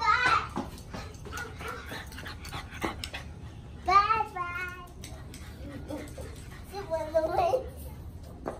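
A small puppy whining mixed with a toddler's high-pitched wordless voice: three short, high calls, one at the start, one about four seconds in and one around seven seconds in.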